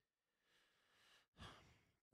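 Near silence, broken by a faint breath drawn in close to the microphone about a second and a half in.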